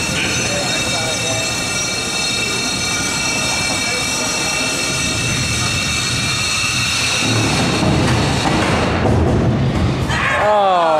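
Steady high whine of a combat robot's spinning shell weapon running at speed, with a rumbling clatter that grows louder in the last few seconds.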